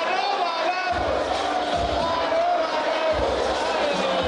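Crowd of supporters shouting and chanting together in celebration around a winning boxer, with a few low thumps underneath.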